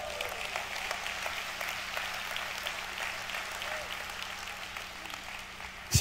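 Church congregation applauding, a steady patter of many hands that eases slightly toward the end.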